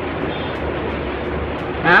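Electric fan running in the room: a steady hiss with a low hum beneath it.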